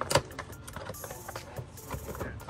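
Handling noise from engine air filters being compared by hand: a sharp knock just after the start, then light rustling and small clicks.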